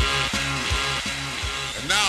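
Instrumental music: a repeating pattern of pitched notes over a bass line, with a falling pitch glide near the end.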